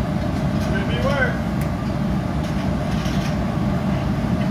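Steady low roar of a gas-fired glory hole (glassblowing reheating furnace) as a piece on a blowpipe is held in it to reheat, with a brief faint voice about a second in.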